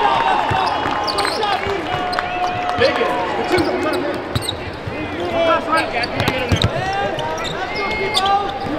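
Basketball dribbled on a hardwood court, with short knocks from the bounces and many short squeaks from sneakers on the floor, over indistinct voices of players and spectators in a large arena.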